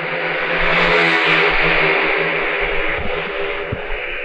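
A steady, hissy drone with a low hum beneath it, cut in abruptly and held without a break, like an edited-in sound effect rather than any sound from the room.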